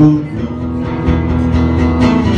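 Acoustic guitar strummed steadily in a live solo performance, between sung lines.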